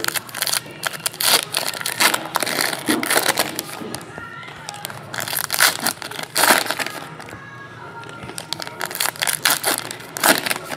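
Foil trading-card pack wrappers crinkling and tearing as packs are ripped open and cards handled, heard as a run of sharp, irregular crackles.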